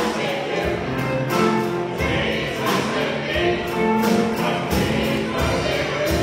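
Live gospel music: a small group of voices singing over a drum kit with a steady beat of drum and cymbal hits, and a bass guitar.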